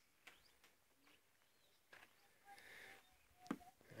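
Near silence: faint outdoor ambience with a few soft clicks.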